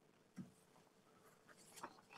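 Near silence in a pause between spoken sentences, broken by one soft brief sound about half a second in and a few faint ticks near the end.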